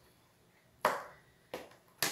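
Plastic Tupperware lid being pulled off a rectangular breading container: a sharp click a little under a second in, then a softer click near the end.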